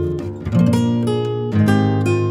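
Background music of strummed acoustic guitar: two chords struck about a second apart, each ringing on and fading.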